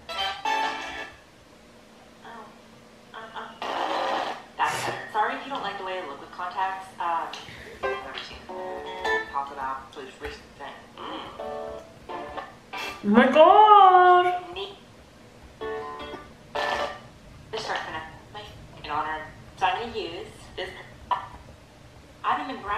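Speech with background music throughout. About 13 seconds in comes one loud, drawn-out vocal sound whose pitch rises and then levels off.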